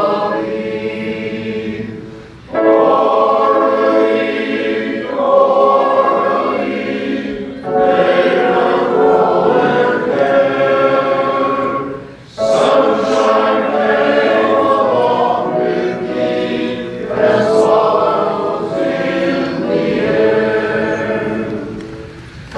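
A mostly male choir singing in parts, in phrases several seconds long with brief pauses between them.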